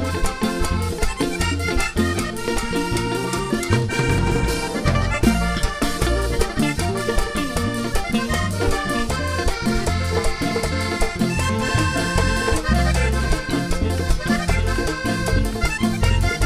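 Live vallenato band music: a diatonic button accordion leads an instrumental passage over a steady bass beat and drums.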